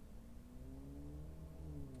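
Faint vehicle engine hum over a low steady rumble, rising slowly in pitch and then dropping near the end.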